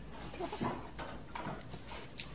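Short vocal noises from a person, a few brief sounds that fall in pitch, about half a second in and again about a second and a half in, over a low room hum.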